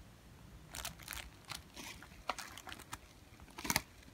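Clear plastic packaging bag crinkling as a bagged can badge is handled, in short rustles with a louder crackle near the end.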